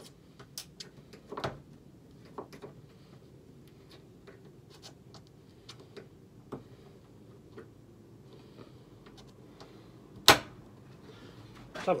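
Small screwdriver prying at a plastic trim retaining clip in a car's engine bay: scattered light clicks and scrapes of metal on plastic, with one sharp, loud snap about ten seconds in.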